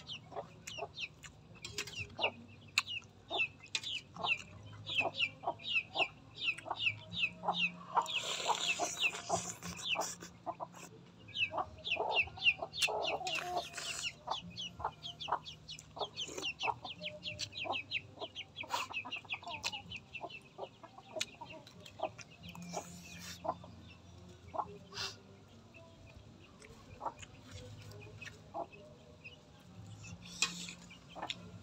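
Chicks peeping: a steady run of short, high, falling chirps, two or three a second, thinning out in the last third. Light clicks of a spoon against a metal bowl come through, with two brief louder rushes of noise about a third and halfway in.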